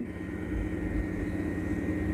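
A steady low drone with a faint high tone above it, without change: the background bed that runs on under the narration.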